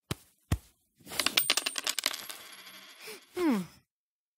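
Two short clicks, then a rapid clatter of small metallic hits with a high ring that dies away over about two seconds, like coins dropping and settling. Near the end a voice gives a short, falling 'hmm'.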